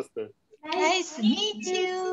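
A high-pitched voice calling out in a sing-song way over a video call, starting about half a second in and lasting about a second and a half.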